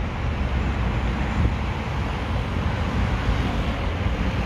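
Steady road traffic noise, a deep even rumble with no separate distinct events.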